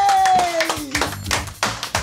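A few people clapping their hands in a short round of applause. The tail of a long drawn-out shout runs under the first second.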